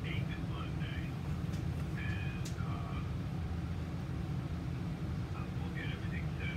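A recorded voice message played back through a phone's speaker held up to a microphone: a man's voice, thin and tinny, heard in short spells. Under it runs a steady low rumble.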